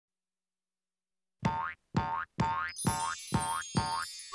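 Six cartoon 'boing' sound effects for bouncing animated letters, about half a second apart, each rising in pitch, after a second and a half of silence. A high jingly tune joins in about halfway through.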